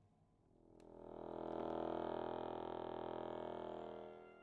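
Chromatic button accordion sounding a dense cluster chord that swells in slowly, holds steady and begins to fade near the end, over the fading low ring of a piano attack.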